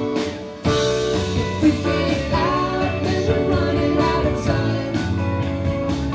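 Live indie rock band playing an instrumental passage of a song on electric guitars and drum kit, with cymbals keeping a steady pulse. After a brief dip, the full band comes back in hard just over half a second in.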